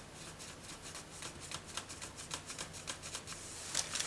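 Folded paper crinkling and tapping as flour is shaken out of it into a glass bowl: a quick run of light crackles, several a second, with a louder rustle near the end.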